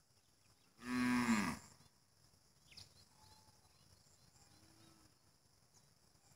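A cow mooing once, a loud call about a second in that lasts under a second and drops in pitch as it ends.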